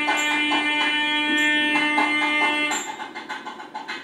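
Instrumental background music: a held note with plucked strings over it, dropping to a quieter rhythmic passage near the end.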